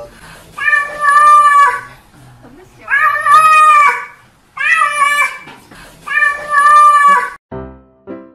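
Domestic cat meowing four times in long, drawn-out calls of about a second each, each held at a steady pitch.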